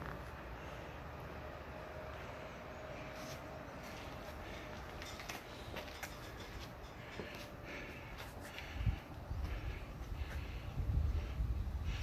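Quiet steady background noise, with low rumbling knocks in the last three seconds from a handheld camera being handled and moved.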